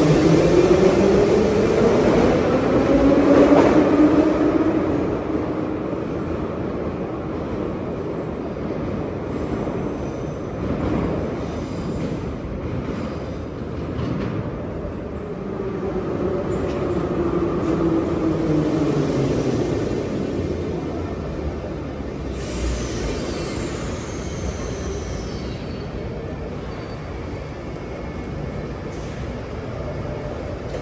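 A metro train pulling out of the station, its traction motors whining upward in pitch over the first few seconds, the loudest part. Later a second train comes in with its motor whine falling as it brakes, a thin high squeal sliding down near its stop.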